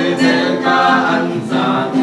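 A small family group of mixed voices, men, women and children, singing a song together without accompaniment, on held notes that shift in pitch.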